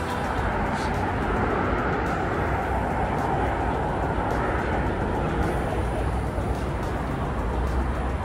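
Steady rushing outdoor noise picked up by a handheld phone microphone while walking, with a low rumble beneath it.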